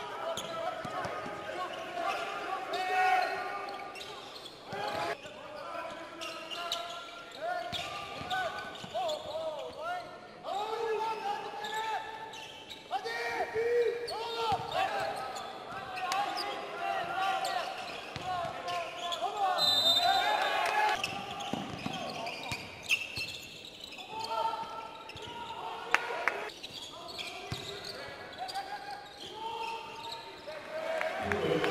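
Basketball game sound in a large sports hall: a ball bouncing on the court, with voices calling out over it.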